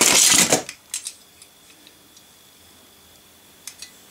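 A short laugh, then a few light clinks of metal diecast toy cars knocking together as a hand rummages in a plastic box and lifts one out: a couple of clicks just after the laugh and a small cluster near the end.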